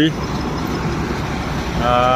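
Expressway traffic: vehicles, including an approaching truck, passing with a steady rumble of tyres and engines. A pitched voice-like sound starts right at the end.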